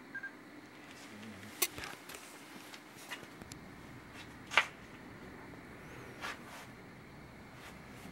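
Low background hiss with a few scattered sharp clicks and taps, the loudest about four and a half seconds in.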